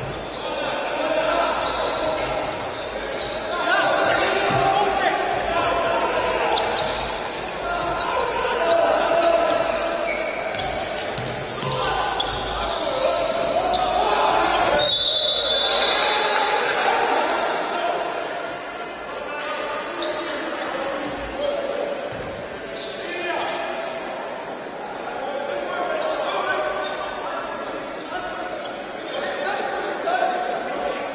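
Basketball game in a large gym: the ball bouncing on the hardwood floor and players' and coaches' voices echoing in the hall. About halfway through, a short, high referee's whistle blast stops play for a foul.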